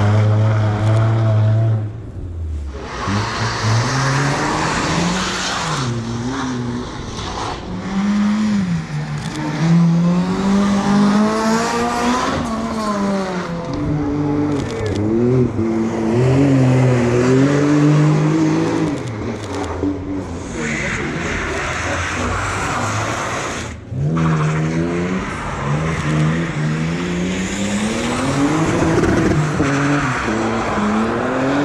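Competition cars' engines revving hard on a tight course, the engine note climbing and falling every second or two as the drivers accelerate and lift between turns. There are two short breaks, one about two seconds in and one about two-thirds of the way through, where one car's sound gives way to another's.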